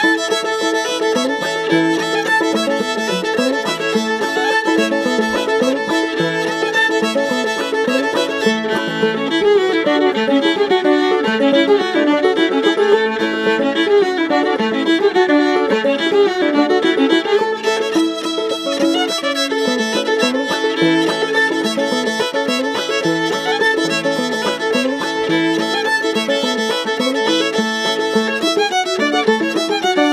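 An old-time fiddle and clawhammer banjo duet playing a lively dance tune together, in an unbroken steady rhythm.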